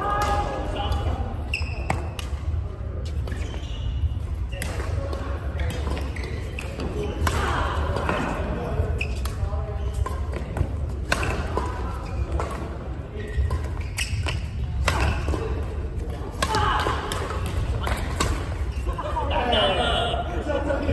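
Badminton rackets striking a shuttlecock in a doubles rally, sharp cracks every second or two that echo in a large sports hall. People's voices come and go over a steady low hum.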